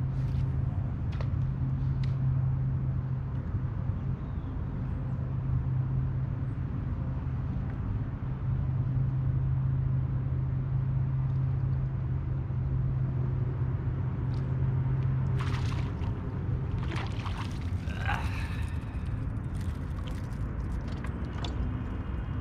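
Bow-mounted electric trolling motor on a bass boat running with a steady hum, which stops about two-thirds of the way through. A few sharp clicks and knocks follow near the end.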